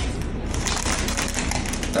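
A Pomeranian's claws clicking and scrabbling quickly on a tile floor as it spins in place.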